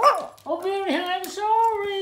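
Chihuahua howling: one long held note starting about half a second in, dipping briefly in pitch twice and lasting nearly two seconds.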